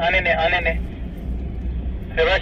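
A man's voice calls out briefly at the start, over the low steady rumble of a 4x4 driving slowly across desert sand.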